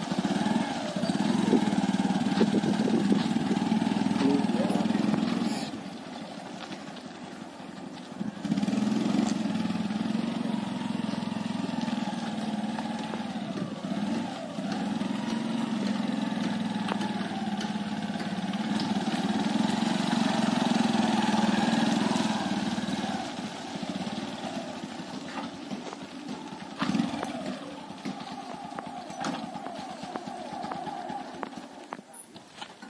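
Motorcycle engine running as the bike is ridden slowly under a load of about 300 kg of iron. The engine drops back for a couple of seconds about six seconds in, picks up again, and runs quieter over the last several seconds.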